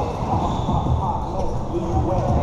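Basketball bouncing on a hard court during a pickup game, with players' voices mixed in.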